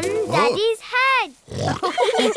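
Cartoon pig characters' voices: two short pitched calls that each rise and fall, then a rougher, noisier vocal sound near the end.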